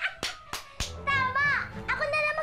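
Three sharp hand claps, followed by a woman's high-pitched excited squeal whose pitch rises and then falls.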